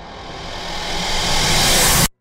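A sound-effect riser: a rushing swell over a low rumble that grows steadily louder and brighter, then cuts off abruptly at the end.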